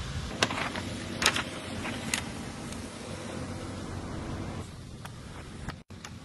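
Steady hum of a large store's background noise, with three short knocks in the first two seconds. A brief silent gap falls near the end.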